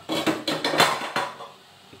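Metal cookware clattering: several clinks and knocks in quick succession over about the first second.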